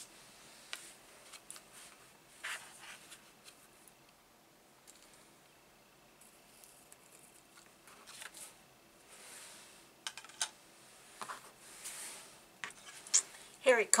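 Faint scratching strokes of a pen drawing on paper, interspersed with a few light clicks and taps of objects handled on a cutting mat.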